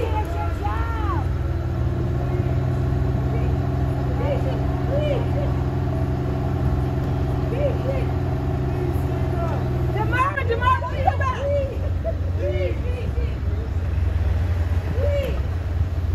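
A motor vehicle engine idling close by: a steady low hum that cuts off about ten seconds in, over a constant street rumble. Scattered voices call out in the background, louder for a moment around when the hum stops.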